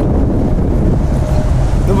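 Strong gusty wind, up to about 50 miles per hour, buffeting the phone's microphone: a loud, steady low rumble of wind noise.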